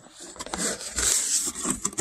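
Cardboard product box being opened: its lid scraping and rubbing as it is pulled off, with small clicks of handling.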